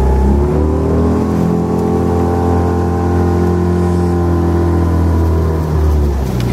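A rowing coaching launch's motor picks up speed, its note rising about half a second in. It then runs steadily at higher revs and eases off just before the end.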